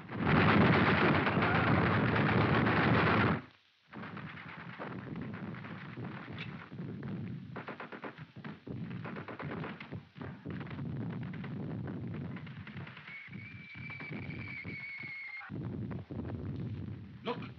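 Rapid gunfire on an early 1930s film soundtrack: a loud, dense burst for about three and a half seconds that cuts off sharply, then steadier rattling fire. A steady high-pitched tone sounds over it for a couple of seconds near the end.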